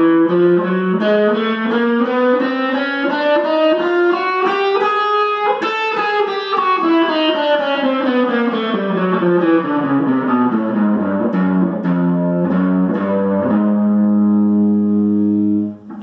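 Epiphone SG electric guitar playing a fast, even run of single alternate-picked notes in a finger-stretching exercise. The notes climb steadily in pitch for about five seconds, then descend, and settle on a low ringing note near the end.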